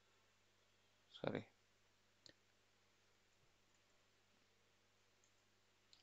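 Near silence: room tone, broken by a single short click a little over two seconds in.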